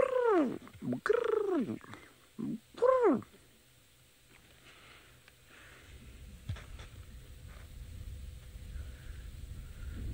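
Burchell's starling calling: three loud, drawn-out calls, each arching up and then falling away in pitch, in the first three seconds. A low rumble builds in the second half.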